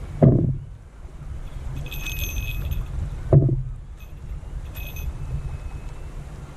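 Small bite bell clipped to a beach-casting rod jingling briefly twice, with thin metallic rings, over a steady low rumble and two dull thumps.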